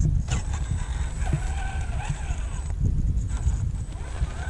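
Electric motor and gearbox of an RC scale crawler whining as it drives down a ramp onto gravel, the pitch rising and falling with the throttle, over a steady low rumble.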